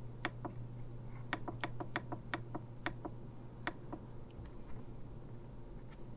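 Bench power supply's controls clicking as its output is set to 3 volts: a run of sharp clicks, about three or four a second, thinning out after about four seconds. A steady low hum runs underneath.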